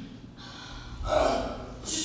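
A young actor's loud, dramatic gasps and a voiced cry as he drops to the floor. A sharp intake of breath comes near the end.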